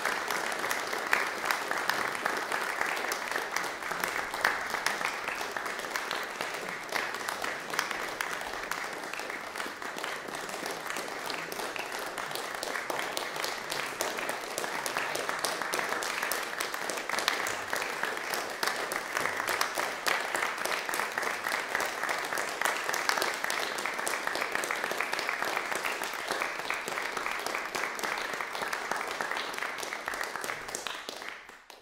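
Concert audience applauding, many hands clapping steadily.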